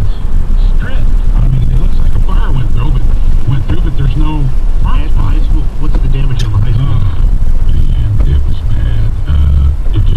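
Car cabin noise while driving: a steady low road and engine rumble, with indistinct voices talking over it throughout.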